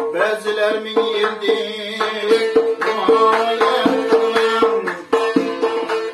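Uzbek tar plucked in a quick folk melody over a steady held drone note, with a doira frame drum keeping the rhythm with sharp strokes.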